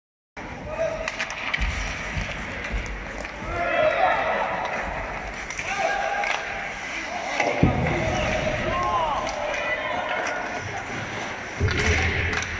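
Ice hockey play in a reverberant indoor rink: skates scraping on the ice and sticks and puck knocking, with a heavy knock about seven and a half seconds in. Voices shout and call out over it.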